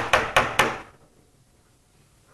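Four quick, sharp knocks, about five a second, from display equipment with a suspected bad connector being struck to bang an open circuit back together ('percussive maintenance'). The knocking stops under a second in.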